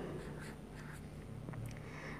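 Faint scratching of a felt-tip marker writing on paper, a few short strokes.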